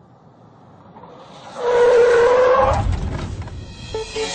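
A car approaching, growing louder, then its tyres screeching for about a second, followed by a low rumble as it slows.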